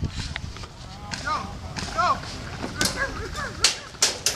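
Airsoft guns firing single shots: about half a dozen sharp cracks at irregular intervals across the field.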